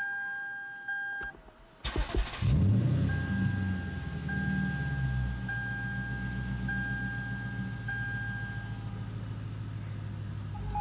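Lexus IS F's 5.0-litre V8 started with the push button, heard from inside the cabin: a short crank about two seconds in, catching with a rev flare, then settling to a steady idle. A two-note dashboard warning chime sounds before the start and again in repeated stretches over the idle.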